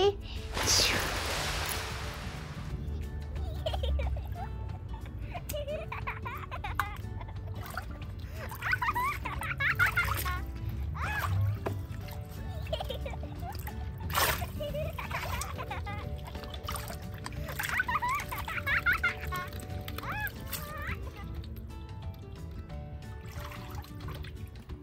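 Water splashing in a small inflatable pool, loudest from about half a second to two seconds in, then lighter water movement under background music with faint voices.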